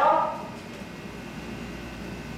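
A spoken phrase ends just after the start, followed by about a second and a half of steady low room noise in a large hall.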